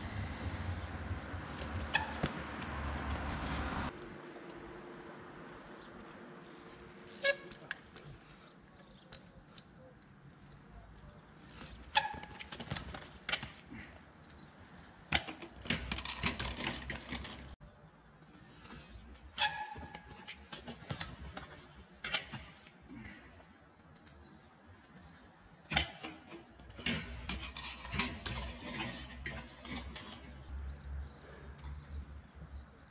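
A 20-inch trials bike knocking and clattering on stone steps: scattered sharp knocks from hops and landings, with a denser clatter partway through as the rider falls and the bike goes down. A low traffic rumble fills the first few seconds, and small birds chirp now and then.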